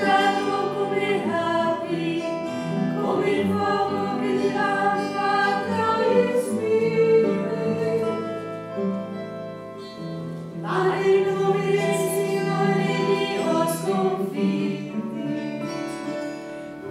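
Choir of Augustinian nuns singing Lauds, held sung phrases with a short breath pause about ten seconds in.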